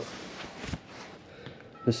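Handling noise from gloved hands fumbling with a keypad phone handset: a brief rustle of glove and sleeve, then a single soft knock about two-thirds of a second in.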